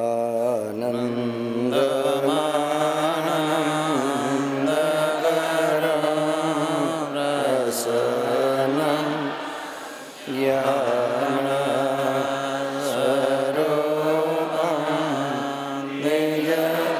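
Slow devotional chanting with long held, gliding notes over a steady low drone. It breaks briefly about ten seconds in, as if for a breath, then carries on.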